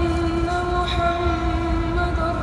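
A muezzin's voice holding one long, steady note of the adhan (Islamic call to prayer), sustaining the vowel of "ashhadu" in the melismatic style of the call.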